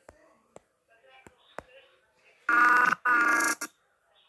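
Two loud bursts of a steady electronic ringing tone, each about half a second long, with a short break between them, in the second half. Before them come a few faint sharp clicks.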